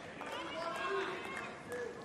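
Faint court sound during a hard-court tennis rally: low murmur of crowd voices and players' footsteps, with no loud ball strike.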